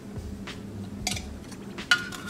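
A few light clinks and knocks as an aluminium canteen cup is handled and a plastic spoon is taken up, the sharpest one near the end, with faint music underneath.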